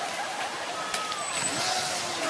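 Small radio-controlled model boat's motor running, its propeller churning water as the boat is released and speeds off, with a sharp click about a second in and a burst of spray-like hiss near the end.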